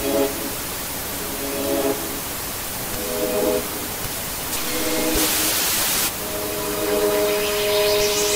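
Television static hiss of a logo sting, with short groups of a few steady low musical tones coming and going every second or two. The hiss swells brighter for about a second a little past the middle.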